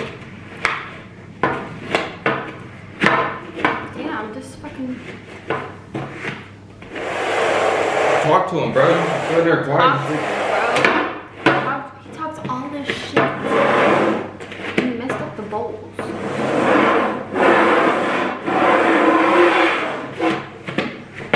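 Upturned bowls being shuffled on a wooden tabletop: first a run of quick knocks as they are picked up and set down, then long stretches of their rims scraping and grinding across the wood as they are slid around.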